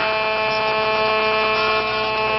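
A loud, steady electrical buzz at one fixed pitch, unwavering throughout.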